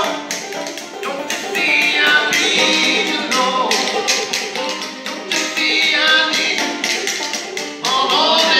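Open-back banjo being picked with steady sharp taps of hand-slapped body percussion, a singing voice rising and falling over them.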